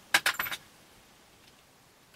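A few quick light metallic clicks and clinks in the first half second, from handling a metal electrical outlet box and its wiring parts.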